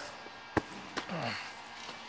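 Two short sharp clicks about half a second apart against quiet room tone, with a faint murmured word just after the second.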